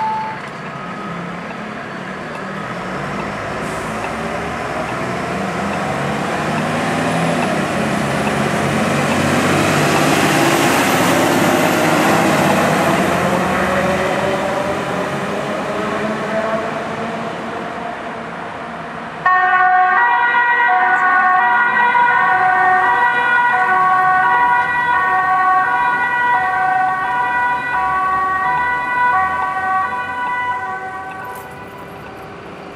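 Fire-brigade turntable ladder truck driving off, its engine note rising as it accelerates. About two-thirds of the way through, the sound cuts abruptly to a loud two-tone electronic siren alternating between its two notes about once a second.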